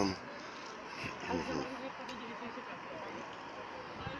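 City street ambience at night: a steady murmur of traffic with faint voices of passers-by, including a brief stretch of talk about a second in.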